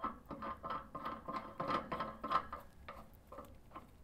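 Metal safety cap being screwed by hand onto its threaded stem on a hydrogen welding machine: a quick run of short scrapes and clicks from the threads, several with a faint metallic ring.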